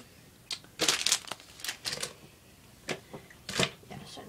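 Handling noise: a few short crinkling rustles and taps, clustered about a second in, with single ones later.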